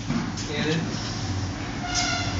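Canon imageRUNNER office copier running with a steady low hum, over faint background voices. A short, flat-pitched tone comes in just before the end.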